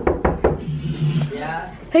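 Knuckles rapping quickly on a closed bedroom door, about three knocks in the first half second, followed near the end by a voice calling out.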